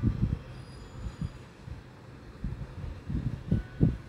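Irregular soft, low thuds and knocks as a wooden spatula works a heap of sugar into chunks of mango pickle in a cooking pot.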